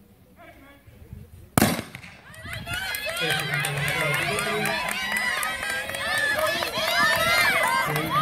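A starter's pistol fires once, a single sharp crack about a second and a half in, starting a sprint race. Spectators then shout and cheer loudly, many voices at once, as the runners go.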